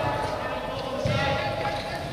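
Many footballs being dribbled and tapped by players' feet on indoor artificial turf, an irregular scatter of soft thuds. Voices carry through the hall over the ball touches.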